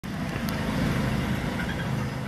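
Steady low rumbling noise with a single short click about half a second in, the sound bed of a studio logo ident.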